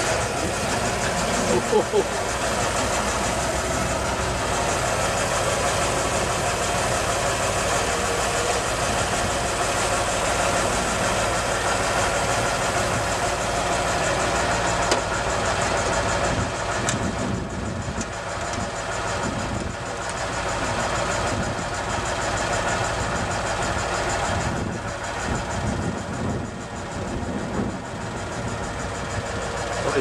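Rolls-Royce Silver Ghost's six-cylinder engine catching on the hand crank just as the sound comes up, then idling steadily.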